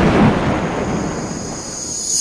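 A thunderclap rumbling loudest near the start and slowly dying away, with rain faintly under it.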